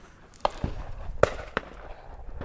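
Four sharp clicks or knocks, spaced unevenly, over faint background noise.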